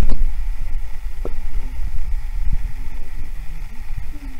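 Loud, uneven low rumble of handling noise, from a hand rubbing and bumping close to the camera's microphone.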